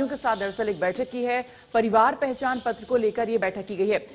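A woman speaking Hindi at a steady news-reading pace, with a short pause about halfway.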